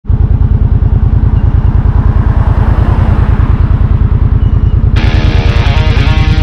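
Motorcycle engine idling with a fast, even low throb. About five seconds in, guitar music suddenly comes in over it.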